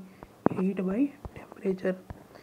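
A person's voice speaking briefly and softly, in two short phrases with a pause between. A single sharp click comes just before the first phrase.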